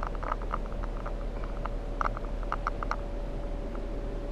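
Quiet vehicle cabin: a steady low hum with a faint held tone, and scattered soft ticks and clicks, most of them about halfway through.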